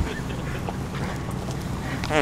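A car's engine and road noise make a steady low hum heard from inside the vehicle, with a few faint short sounds over it.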